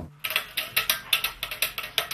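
Electric bass strings played percussively: a fast, uneven run of muted slaps and clicks, roughly seven a second, with hardly any ringing note.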